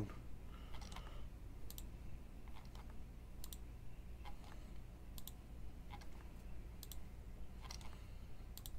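Computer mouse clicking, about one click a second, over a faint steady low hum.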